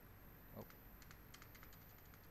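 Faint computer keyboard key presses: a few scattered taps, then a quick run of them in the second half.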